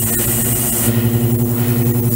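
Ultrasonic cleaning tank running with its liquid circulation pump: a steady low hum with evenly spaced overtones, under a high hiss that drops away about a second in.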